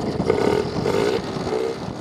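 Small Yamaha two-stroke outboard motor on a dinghy, running steadily after being sunk, flushed and serviced.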